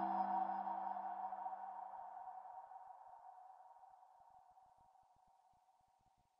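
The ringing tail of a single struck, bell-like chime: several steady tones, low and middle, fading away over about five seconds until they die out.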